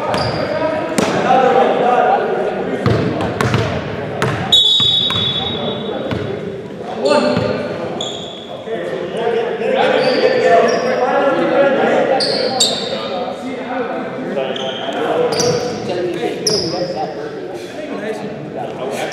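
Basketball game sounds echoing in a gym: the ball bouncing on the court, short high sneaker squeaks, and players' voices.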